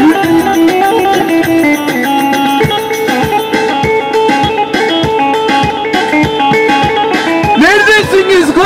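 Korg electronic keyboard playing a Turkish dance tune through a loudspeaker, with a plucked-string lead voice; a drum beat comes in about two and a half seconds in. Singing returns near the end.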